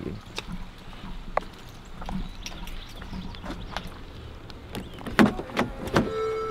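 Scattered light taps and drips in steady rain beside a parked Mercedes SUV. Near the end comes a sharp click as the car's door handle is pulled and the door unlatches.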